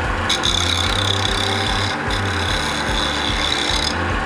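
Record Power wood lathe running, with a parting tool held against the spinning wooden workpiece: a steady cutting hiss that starts just after the beginning and breaks off briefly about halfway, over the low hum of the motor.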